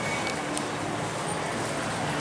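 Street traffic noise: a steady wash of vehicle sound with no distinct event, and one faint click about half a second in.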